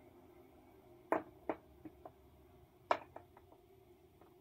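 Round plastic fridge-type magnets clicking and tapping as they are handled and set onto a whiteboard: a sharp click about a second in and another near three seconds, each followed by a few fainter taps.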